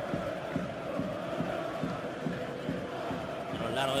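Football stadium crowd chanting and singing, a steady mass of many voices.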